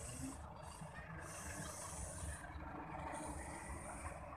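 Faint low rumble of a distant train running away along the track, with a thin high hiss above it that breaks off a few times.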